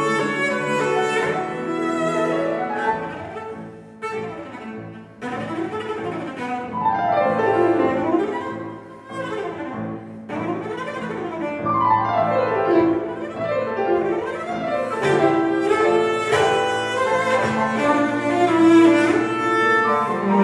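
Cello and Steinway grand piano playing a classical cello sonata. Held cello notes sound over the piano, with rapid runs sweeping up and down in pitch through the middle.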